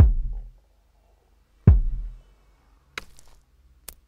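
Drum one-shot samples triggered from pads in Loopy Pro: two deep kick-drum hits about a second and a half apart, each dying away in about half a second, then lighter, sharper hits near the end.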